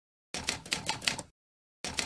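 Typing sound effect: a quick run of key clicks lasting about a second, a pause of dead silence, then a second run starting near the end, matched to text being typed onto the screen.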